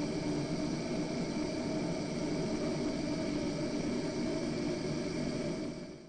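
Steady rushing noise from a loudspeaker driving a test duct to simulate fan noise, heard through a foam-lined expansion-chamber silencer that cuts it by around 17 dBA. Faint steady hums run through the hiss, which fades out near the end.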